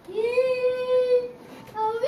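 A child's singing voice holds one long note that slides up into pitch, breaks off, then starts a new note near the end.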